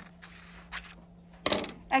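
Scissors finishing a cut through a paper pattern, with faint snips and one louder knock about one and a half seconds in.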